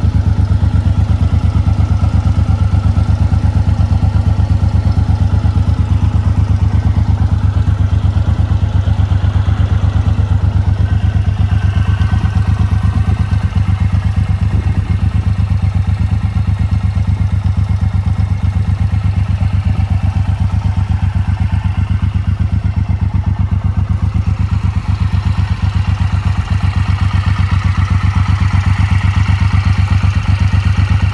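Suzuki Boulevard M109R's 1783 cc V-twin engine idling steadily, its exhaust note even and unchanging.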